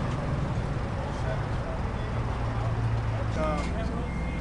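Propane-powered Toyota forklift engine running steadily, a low drone that rises a little in pitch for a second before settling. Near the end a reversing beeper starts, short high beeps under a voice.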